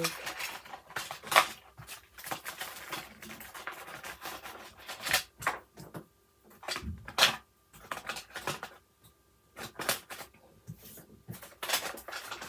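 Small plastic diamond-painting tools clicking and rattling while they are packed into a fabric toolkit pouch, with the pouch rustling; the sharpest clicks fall about a second and a half in, around five seconds, and about seven seconds in.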